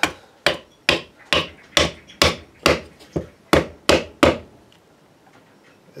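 Wooden mallet striking a wooden wedge about eleven times, a little over two blows a second, driving it into a bonded ABS knife sheath to force its bond lines apart. The blows stop about four seconds in.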